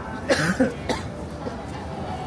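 A person coughing three times in quick succession, within about a second, over steady street background noise.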